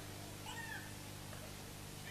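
A faint, short pitched cry that rises and falls, about half a second in, over a steady low electrical hum.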